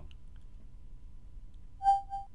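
Faint background hiss, then near the end a brief electronic tone from Windows 10's Cortana assistant, sounded twice in quick succession as she takes the spoken request and starts her reply.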